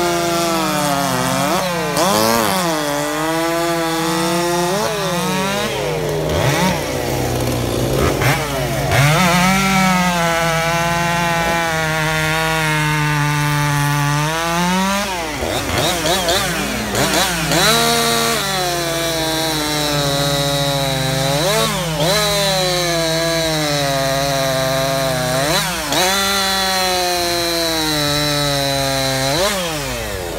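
Gasoline chainsaw cutting into a log, its engine pitch sagging under load in the cut and rising sharply each time it frees up, over and over.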